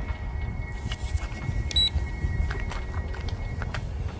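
A single short, high electronic beep about halfway through from the RG101Pro drone's remote-control transmitter, as the geomagnetic (compass) calibration is started. Underneath runs a low wind rumble on the microphone and a faint steady high tone.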